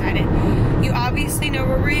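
Steady low rumble of road and engine noise inside a moving car's cabin, with a woman talking over it.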